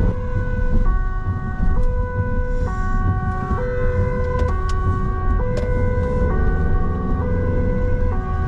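Dutch police car's two-tone siren, switching between a higher and a lower note about once a second, heard from inside the car on an urgent run, over engine and road noise.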